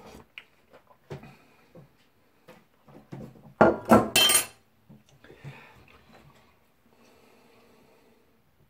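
Metal spoon knocking against a dish: a few light taps, then a louder clatter with a ringing clink about four seconds in.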